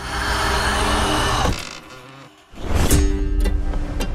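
Trailer sound design: a steady buzzing drone over music that drops away about one and a half seconds in, then returns with a low boom near the three-second mark.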